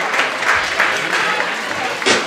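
Audience applauding, a dense patter of many hands clapping, with voices among the crowd.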